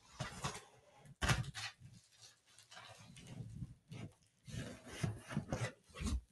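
Plastic bubble wrap crinkling and rustling as a wrapped headset is handled and lifted out of a cardboard box, with the loudest crackle about a second in and bursts of handling noise after it.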